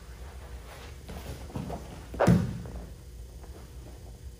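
Bodies grappling on a foam mat: soft scuffling and shifting, with one loud thud about two seconds in as a body lands on the mat.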